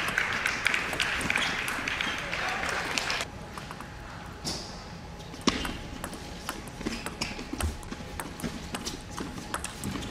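Crowd applause and cheering for about the first three seconds, cut off suddenly. Then a table tennis rally: the plastic ball ticking sharply off rackets and table in quick succession, several hits a second.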